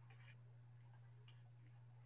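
Near silence: room tone over an online call with a steady low hum and a couple of faint ticks.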